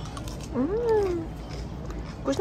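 A toddler's short wordless vocal sound, rising then falling in pitch, over a steady low background hum.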